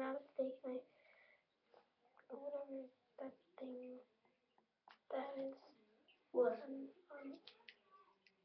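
A child's voice in short, quiet bursts of talk, with a few faint clicks near the end.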